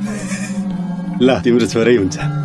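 A man laughing in several quick pulses, starting a little past halfway, over steady background music.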